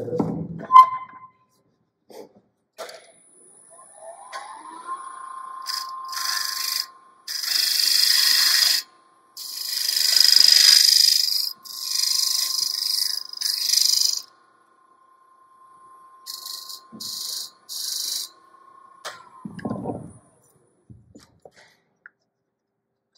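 A sharp knock just after the start, then a wood lathe's motor speeding up with a rising whine, running with a steady whine while a hand-held turning tool cuts the spinning wooden box part in several loud scraping bursts of a second or two each, and winding down with a falling whine near the end.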